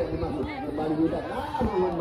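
Indistinct chatter of spectators, several voices talking at once and quieter than the commentary around it.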